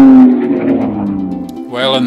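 A music or sound-effect note, held and sliding slowly down in pitch, fading away within the first half second, with a lower tone trailing off. A voice begins near the end.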